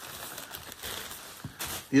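Rustling and soft knocking of packaged items being handled inside a cardboard box, with a few sharper crinkles near the end.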